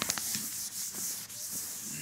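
Chalkboard eraser rubbing back and forth across a chalkboard: a steady scrubbing hiss, with a few small clicks right at the start.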